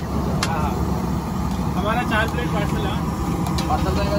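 A few sharp clinks of a steel ladle against a large flat cooking pan and a steel bowl, over a steady low rumble and the chatter of voices.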